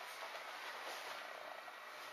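Faint steady background hiss of a quiet room, with no distinct events.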